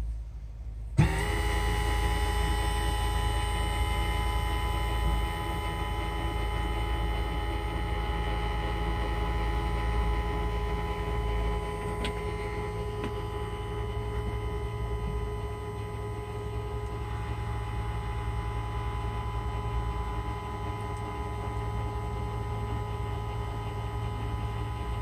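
A 14-inch electric linear actuator starts about a second in and runs with a steady motor whine and hum. It is slowly driving a sliding chicken-coop door closed on a voice command through a Z-Wave relay.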